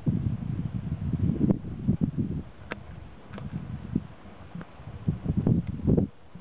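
Wind buffeting the camera microphone, a low rumble that rises and falls in gusts, with a few light clicks of handling noise.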